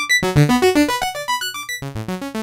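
Hardware Dave Smith synthesizer playing a fast sequence of short pitched notes, triggered from a MIDI clip, over a low held note.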